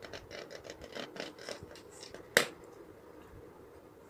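Homemade LEGO spinning top spinning on a studded LEGO baseplate, its plastic scraping with a rapid, fading rattle as it slows. A little over two seconds in there is one sharp plastic clack as it tips over.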